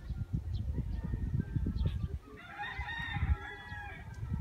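A rooster crowing once, one long call starting a little past halfway, over a low rumble of wind on the microphone.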